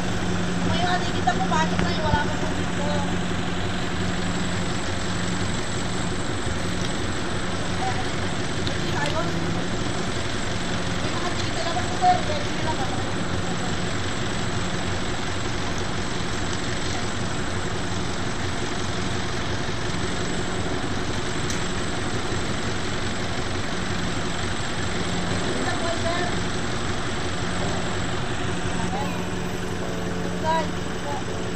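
Steady low drone of engines idling, an even hum that holds without change, with scattered distant voices over it.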